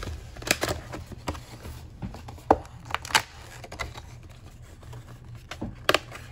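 A cardboard trading-card booster box being opened by hand: irregular rustling and scraping of cardboard and wrapping, broken by several sharp clicks and snaps.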